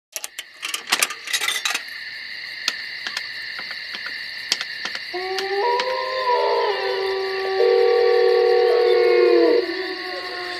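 Clicks and clatter of a payphone handset being lifted off its hook, over a steady high hiss. From about five seconds held electronic tones join, sliding and stepping in pitch, then falling away shortly before the end.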